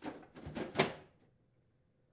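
Plastic ice bucket of a GE side-by-side refrigerator sliding into the freezer compartment, scraping for about a second and loudest as it seats.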